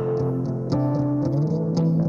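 Live indie-rock band playing a short instrumental gap between sung lines: held keyboard chords and electric guitar over a steady low note, with light ticks high above.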